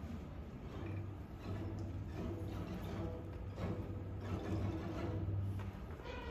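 Hushed auditorium before an orchestra begins: a steady low hum with faint rustling and a few soft held tones, no full playing yet.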